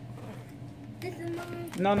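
Mostly a woman's voice. A quiet first second holds only a low steady hum, then she murmurs softly about a second in and says "no" at the end.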